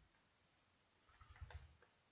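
Near silence with faint, irregular small clicks and soft rustling from hand crocheting, a crochet hook working yarn, in a short cluster just past halfway.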